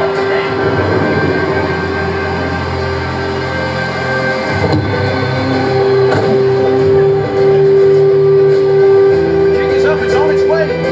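Dramatic film-score music with long held chords, growing louder in the second half, played over loudspeakers in a hall.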